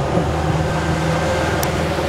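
Outboard motor running steadily, pushing a small boat along the water: an even low drone with the rush of water and wind of the moving boat.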